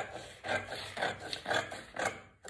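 Scissors cutting through brown pattern paper, a crisp snip about twice a second.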